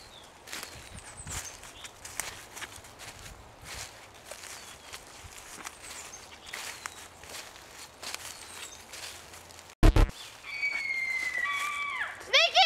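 Footsteps through dry leaves and undergrowth, with irregular crackling and rustling of brush. A sudden loud thump comes just before 10 seconds in, followed by a thin, high, steady tone that steps in pitch, lasting about two seconds.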